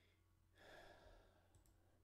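Near silence, with a soft exhaled breath about half a second in and two faint mouse clicks near the end.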